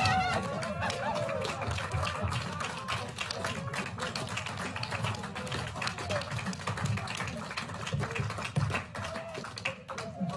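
A small group of people clapping, a quick, irregular patter of hand claps throughout, with a few cheering voices near the start.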